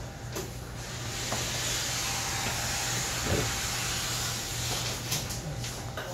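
A steady hiss of noise that swells about a second in and fades near the five-second mark, over a low steady hum.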